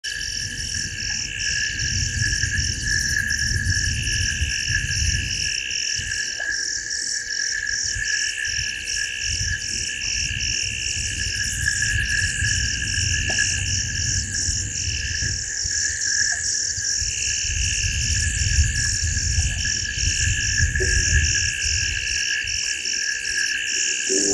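Night chorus of frogs and insects at a waterhole: several overlapping calls run on without a break, one of them a rapid, pulsing trill. A low rumble comes and goes beneath them.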